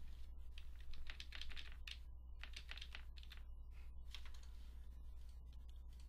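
Computer keyboard keys pressed in a faint, irregular run of clicks, arrow keys nudging an on-screen object into place, over a steady low hum.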